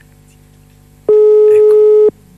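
A telephone line's ringing tone heard over the studio phone line as a call is placed: one loud, steady tone about a second long, starting about a second in and cutting off sharply.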